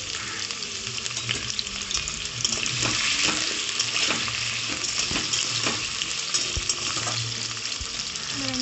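Potato cubes sizzling in hot oil in a steel kadai. Through the middle stretch, a steel spoon scrapes and knocks against the pan as they are stirred.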